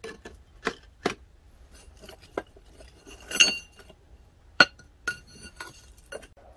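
Steel and lumps of charcoal clinking in a brick-lined forge as a steel blade blank is set into the fire: a string of sharp clinks, a couple of them, near the middle and past four seconds in, ringing briefly.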